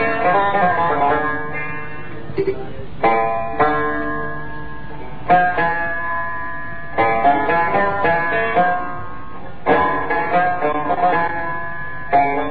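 Instrumental interlude of an Algerian chaabi song: plucked string instruments play runs of quick, ornamented notes in phrases, with fresh strong attacks every second or two.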